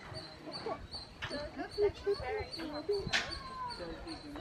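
People talking beside an animal pen, with one short high-pitched cry that falls in pitch about three seconds in.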